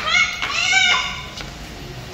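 A young child's high-pitched squeal, in two shrill calls within the first second.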